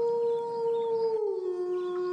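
A long canine-style howl, held on one pitch and then dropping lower a little past a second in.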